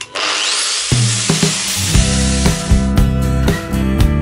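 Angle grinder spinning up with a rising whine and grinding back fibreglass laminate residue in a boat's bilge. Music comes in about a second in and takes over as the grinding fades near the end.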